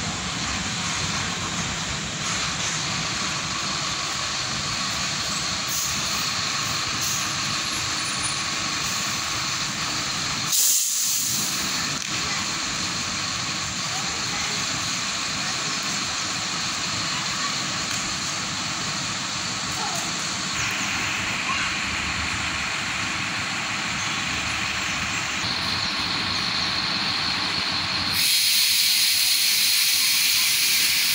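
A bus running at low speed as it pulls into a bay, with a brief hiss about ten seconds in. A louder, steady hiss starts near the end.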